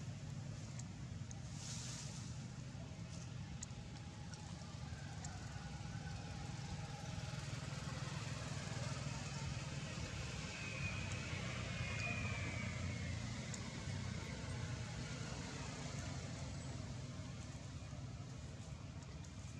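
A steady low engine-like rumble, as of distant road traffic, with faint scattered ticks over it.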